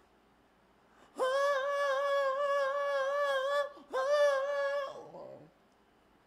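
A man singing a cappella without words. After about a second of quiet he holds one long high note with a slight waver, breaks briefly, then sings a shorter note that fades out.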